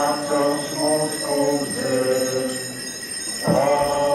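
Sung liturgical chant: a melody in long held notes, with a short breath near the end before the singing resumes.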